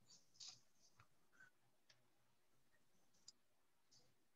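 Near silence, broken by a few faint, scattered clicks.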